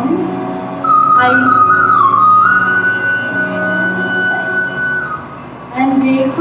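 Instrumental background music: a melody that slides between notes and then holds one long high note over a steady low drone.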